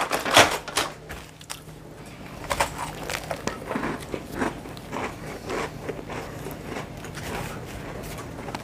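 A person chewing a cake rusk, a dry toasted cake slice: a steady run of short crunchy chews, about two a second. A few sharp clicks and crackles come in the first second.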